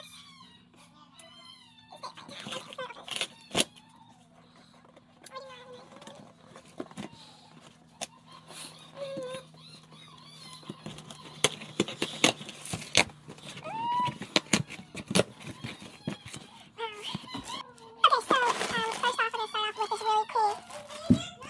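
Packing tape being peeled and ripped off a cardboard box and the flaps pulled open: a run of sharp rips and crackles. Plastic packaging rustles near the end.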